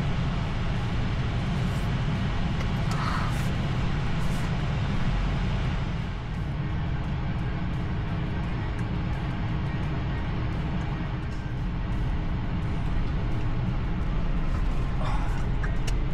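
Steady low road and tyre rumble heard inside the cabin of a 2026 Tesla Model Y electric car driving slowly in traffic.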